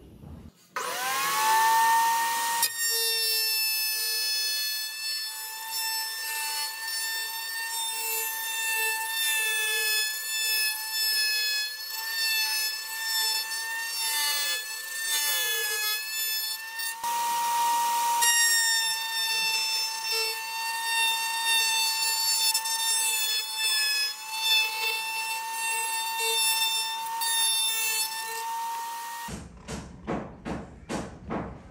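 Table-mounted wood router spinning up with a rising whine, then running at full speed with a high, steady tone that wavers slightly as a bearing-guided trim bit cuts the edge of a wooden ring. It shuts off about a second before the end.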